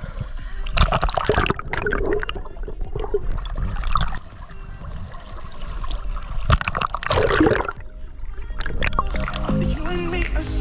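Seawater splashing and sloshing close to a camera held at the water's surface as a swimmer strokes through it, in irregular surges with the strongest about a second in and around seven seconds. Music comes in near the end.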